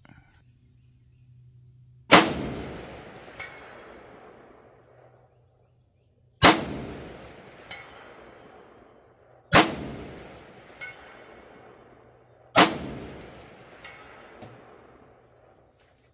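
Four rifle shots from a 7.62×39 rifle, spaced about three to four seconds apart, each followed by a long rolling echo. A fainter, sharper report comes about a second after each shot.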